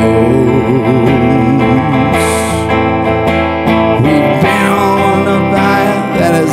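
Gretsch hollow-body electric guitar strummed in a slow song, with a held note wavering in pitch in the first second or so.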